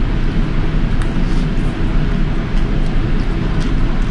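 A steady, loud low rumble of background noise, with a few faint light clicks of a fork against a paper noodle cup.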